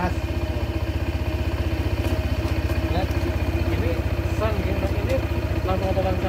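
Honda PCX 160 scooter's single-cylinder engine idling with a steady, even low pulse.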